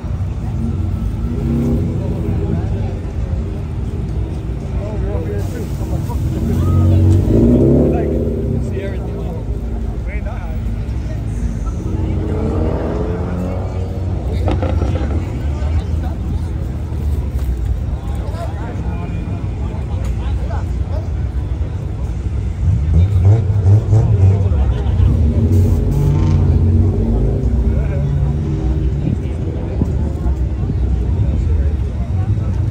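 Modified sports cars' engines running and revving as the cars pull out one after another, with a rise in pitch partway through and the loudest burst about three-quarters of the way in. Crowd voices are heard throughout.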